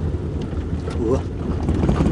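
Steady low rumble of a car's engine and tyres heard from inside the cabin, the car moving slowly along a road scattered with leaves and debris.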